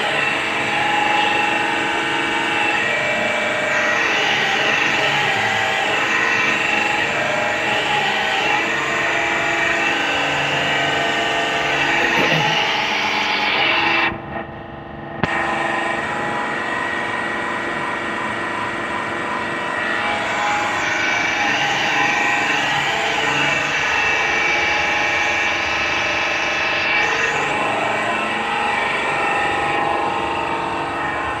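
Electric pressure washer's motor and pump running steadily and loudly. The sound cuts out for about a second midway, then carries on.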